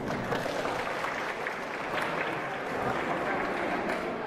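Audience applauding, many hands clapping steadily.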